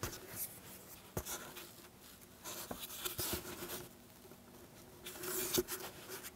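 Faint, intermittent scraping and rubbing of a small hand tool on a wooden guitar brace and top, with a few light clicks.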